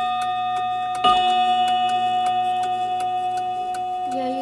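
Sessions mantel clock's hammer striking its single chime rod: one strike about a second in rings out as a long, slowly fading tone over the end of the previous strike. The movement ticks steadily underneath.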